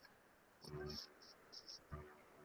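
Near silence, with a few faint short clicks and a brief faint low murmur.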